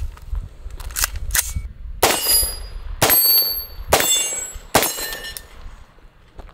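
CMMG Banshee AR pistol in 4.6x30mm, fitted with a muzzle brake, fired four times at a slow, deliberate pace, about a shot a second, while sighting in. Each shot is a sharp bang that rings out afterwards. A few lighter clicks come before the first shot.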